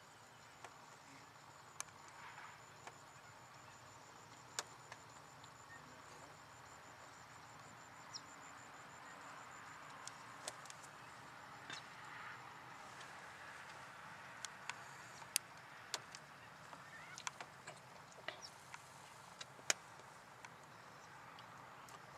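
Faint open-air background with short sharp clicks scattered throughout and distant bird calls.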